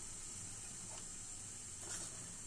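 Faint steady hiss from the gas stovetop, with a soft tick about a second in and another near the end.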